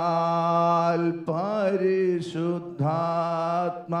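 A man singing slowly into a handheld microphone in long, drawn-out held notes, with short breaks about a second in and near three seconds.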